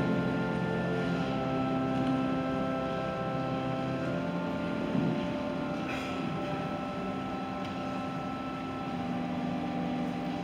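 Slow organ music of long sustained chords, changing every second or two, with a soft thump about halfway through.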